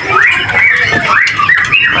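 White-rumped shamas in breeding cages singing and chattering, a dense run of rising and falling whistled notes.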